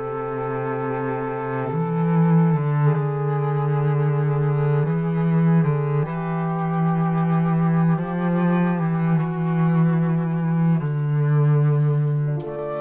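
Instrumental passage of a low bowed string instrument, cello-like, playing a slow melody of held notes that change every second or so, with slight vibrato.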